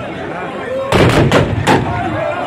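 A ragged volley of black-powder musket shots from a line of fantasia (tbourida) horsemen: about four loud bangs, not quite together, spread over less than a second about a second in. This falls short of the single simultaneous blast a troupe aims for. Crowd chatter runs underneath.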